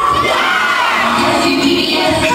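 A crowd of children shouting and cheering, many voices at once with no break.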